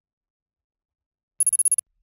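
Silence, then about one and a half seconds in a brief high trilling ring, a quick run of about eight rapid pulses lasting under half a second: a bell-like transition sound effect marking the change to the next word card.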